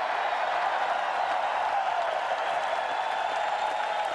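Large arena crowd cheering and applauding, a steady mass of voices and clapping.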